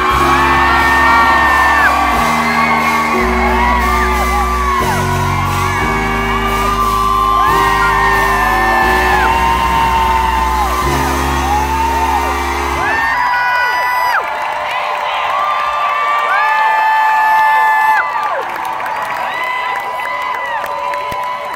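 Live band music: deep bass notes and chords under high held, sliding notes, with whoops. About 13 seconds in the bass and chords drop out, leaving the high held notes and whoops.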